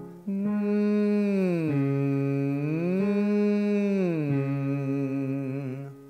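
A man singing a tongue-relaxing glide exercise with his tongue resting between his lips. The voice slides down, back up, and down again over a five-tone scale, and the low final note wavers with vibrato.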